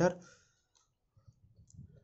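A man's voice trailing off at the end of a phrase, then a near-silent pause with a few faint, small clicks.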